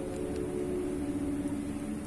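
A steady low hum, a few constant tones over a faint hiss, with no knocks or clicks.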